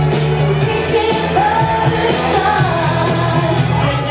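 Recorded pop song playing loudly, a sung lead vocal over a steady bass line.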